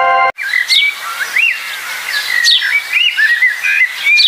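Ringing chime tones that cut off suddenly about a third of a second in, then a songbird singing: a varied run of high chirps and whistled rising and falling glides.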